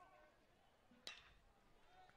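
Near silence of faint ballpark ambience, broken about a second in by one sharp crack: a metal baseball bat hitting the pitched ball.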